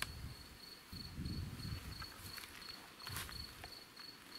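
Faint, steady, high-pitched chirping of a cricket-type insect in a fast, even pulse, with some low rustling and rumble underneath.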